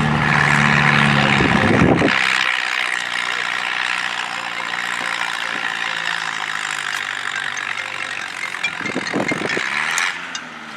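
An antique farm tractor's engine running steadily at idle, its low hum dropping away about two seconds in and carrying on more faintly.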